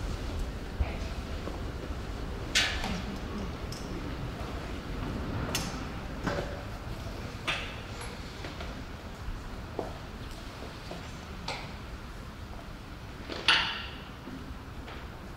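Scattered knocks and clinks of small glass jars and other materials being picked up and set down on a table, about half a dozen in all, the loudest just before the end.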